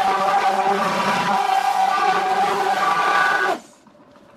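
Handheld stick blender running steadily with a motor whine, immersed in a pitcher of cold-process soap batter to blend in colourant; it switches off about three and a half seconds in.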